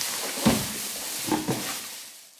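Plastic wrap and a cardboard box rustling as an upholstered pouf is lifted out of its packaging, with a dull thump about half a second in and a smaller knock a second later.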